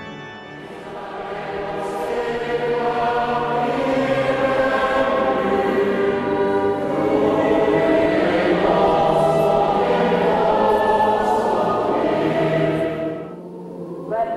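Choir singing a liturgical hymn, taking over from a sustained organ chord in the first half-second, swelling, and fading out shortly before the end.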